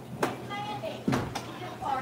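Faint, indistinct talking, with two short sharp clicks: one just after the start and one about a second in.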